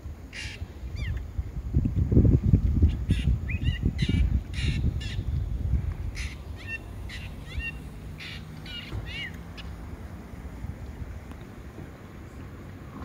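A bird calling over and over, harsh sharp calls mixed with short chirps that rise and fall. A loud low rumble rises under the calls in the first few seconds and fades by about the middle.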